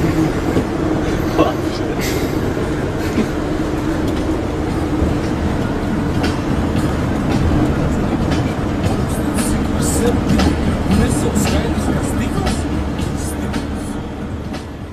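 Steady rumble of a van driving, heard from inside the cab, with a constant hum and scattered light ticks; it fades out near the end.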